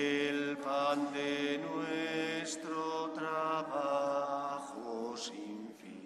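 Slow hymn sung in long held notes, the offertory song of a Catholic Mass, fading out near the end.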